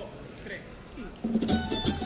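A coro's band of guitars and other plucked strings strikes up a little over a second in, playing rhythmic strummed chords over a low bass line, after a few faint voices in the quiet hall.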